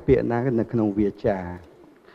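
A man speaking Khmer into a handheld microphone; his voice stops about one and a half seconds in.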